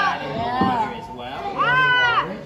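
A young child's high-pitched voice: a short rising-and-falling call about half a second in, then a longer, louder one near the end.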